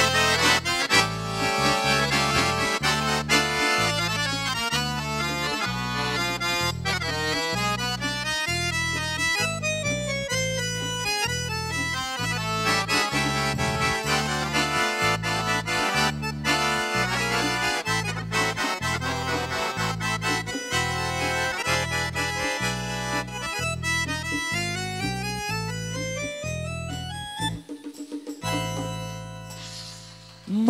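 Bayan (button accordion) playing a fast instrumental solo: running melody lines over rhythmic, changing bass chords, with hand drums beating along. Near the end the bass drops out and the playing thins before the verse resumes.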